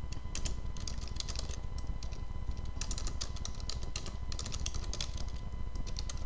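Computer keyboard typing: runs of quick keystrokes with a short pause about two seconds in, over a faint steady hum.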